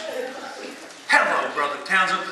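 A man's voice making short vocal outbursts with no words made out. They start about a second in, after a quieter stretch.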